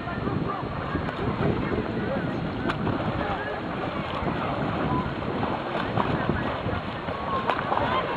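Wind buffeting the microphone at a lakeside, over a steady background of distant, overlapping voices.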